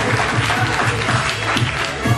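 Hand clapping from a group of people, over music with a steady low beat playing underneath.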